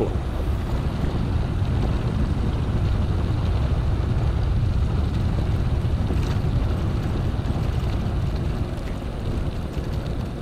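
Wind buffeting an action camera's microphone, mixed with tyres rumbling on gravel, as a mountain bike descends at about 40 km/h. The rumble eases slightly near the end as the bike slows.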